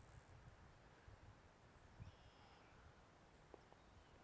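Near silence: faint outdoor room tone with a low rumble, and a faint short high-pitched chirp about two seconds in.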